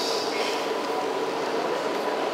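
Steady hiss with a faint, even hum and no speech: the background noise of the room during a pause in talking.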